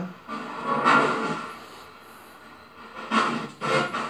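Muffled, garbled voice-and-music-like fragments through a small speaker, typical of a ghost box (spirit box) scanning radio. The sound comes in two patches, about a second in and again near the end, with a quieter gap between.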